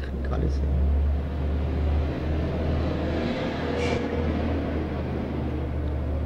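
A low rumble over a steady low hum, swelling for a couple of seconds mid-way and then easing off.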